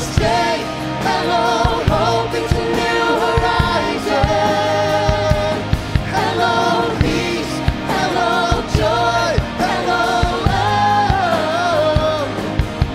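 Live worship band playing a contemporary worship song: a male lead vocalist singing with backing singers over keyboard, guitars, bass and a steady drum beat.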